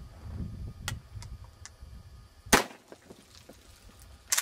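A single blast from a Remington 870 Express pump-action shotgun about two and a half seconds in, sudden and much louder than anything else.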